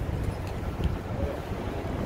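Wind rumbling on the microphone over the steady background noise of city street traffic.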